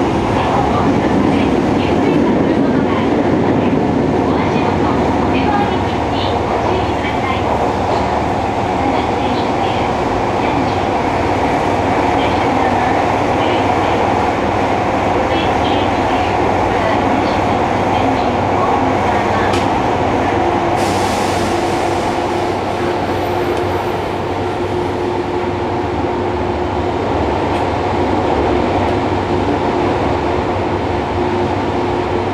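Interior running noise of a Fukuoka City Subway 1000N-series train, with its Hitachi three-level IGBT-VVVF drive, under way in a tunnel: a loud, steady rumble of wheels, motors and car body. About two-thirds of the way through, a brief hiss is heard and a steady hum sets in for several seconds.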